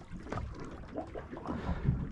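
Wind on the microphone over water moving around a slowly drifting boat's hull, with a few faint irregular knocks and splashes.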